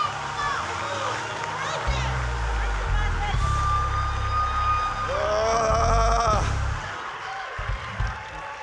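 Church band music swelling between lines of preaching: deep bass notes come in about two seconds in, with a long held keyboard note. Past the middle comes a drawn-out shouted cry from a voice, over scattered calls from the congregation.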